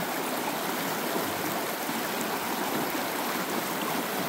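A small creek running over rocks in a riffle: a steady rush of water.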